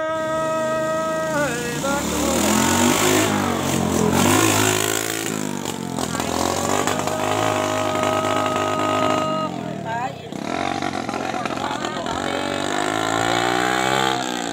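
Traditional Thái folk singing with long, held, slightly wavering notes. A motorcycle engine passes a few seconds in, under the voice.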